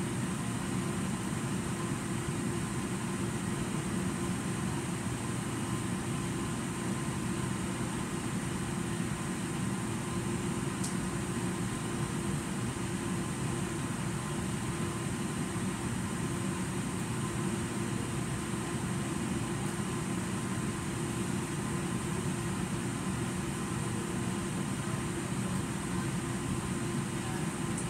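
Steady hum of a ventilation fan, with a faint high whine over it. A single faint tick about eleven seconds in.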